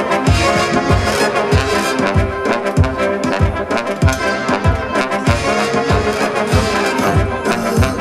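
Electro swing band playing live: trombone lines over a steady electronic beat, about two kick drum beats a second.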